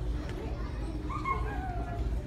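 A small child's high, whiny vocalising, a few short falling cries over the low murmur and shuffle of an audience in a hall.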